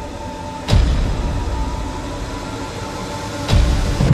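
Cinematic promo soundtrack: a low rumbling drone with a held tone, broken by two sharp impact hits about three seconds apart, each dropping into a deep falling boom.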